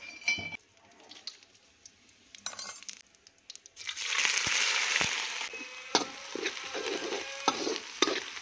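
Chopped onions tipped into hot oil in a kadhai, setting off a loud, steady sizzle about four seconds in, after a few faint clinks. Toward the end a slotted spoon knocks and scrapes in the pan as the frying onions are stirred.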